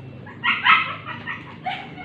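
A dog barking, a few short barks about half a second in and another near the end.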